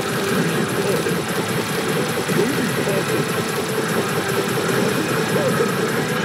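Pachinko parlour din: a steady, dense clatter of steel balls running through the machines, with electronic machine sounds and a faint held tone under it.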